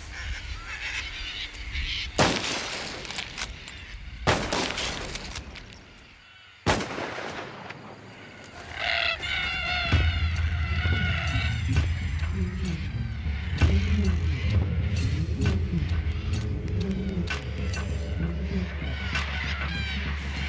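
Three rifle shots a couple of seconds apart, each cracking sharply and dying away. Then a flock of cockatoos screeching over the steady low running of a vehicle engine.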